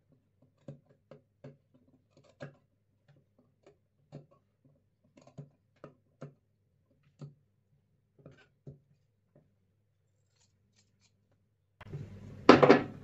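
Scissors snipping through fabric, about a dozen faint, short cuts at uneven intervals as the blades cut out diamond-shaped openings in a stitched sleeve facing.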